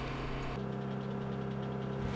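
Steady drone of a C-17 transport plane's engines heard inside the cabin, a constant low hum that changes character about half a second in.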